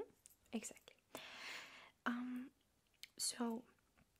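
A woman's soft-spoken, partly whispered speech: a few short quiet words with a long breathy, hissing stretch in between.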